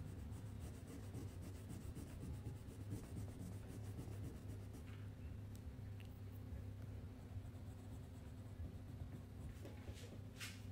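Colored pencil shading on paper with quick back-and-forth scratching strokes, dense for the first few seconds and sparser after, over a steady low hum.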